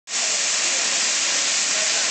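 Steady, loud hiss of steam escaping from a standing QJ-class 2-10-2 steam locomotive.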